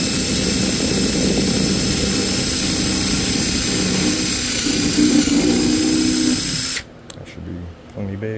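Power drill running steadily, boring a hole through a plastic storage case, then stopping suddenly near the end.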